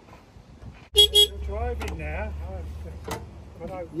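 Two short toots of a small railway locomotive's horn about a second in, over a low rumble, followed by voices.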